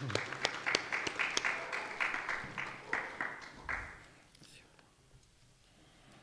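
Audience applause, a dense patter of hand claps that fades out about four seconds in.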